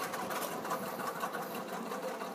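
A small machine running steadily with a fast, even clatter.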